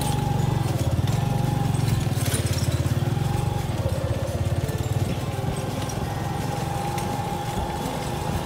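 Motorcycle engine running under way at a steady speed, a fast low pulsing drone, with a thin high tone coming and going above it.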